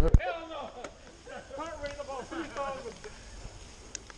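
A person talking, with a few loud low thumps at the very start.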